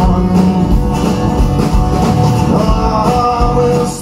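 Live guitar music played on stage and amplified through the room's sound system.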